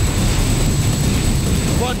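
Jet dragster's jet engine running at full power, a dense, loud rush with a steady high whine over it, cut off near the end by a man's voice.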